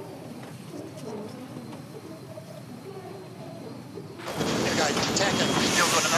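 A man's voice on the race radio channel, the chief umpire's, faint at first. About four seconds in, a sudden loud rush of hiss and wind noise comes in, with voices over it.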